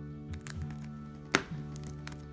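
Background music with held notes, and one sharp tap about two-thirds of the way through as a card in a plastic sleeve is handled.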